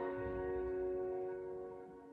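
Violin and grand piano holding a soft, sustained chord that fades away, the closing notes of a classical piece.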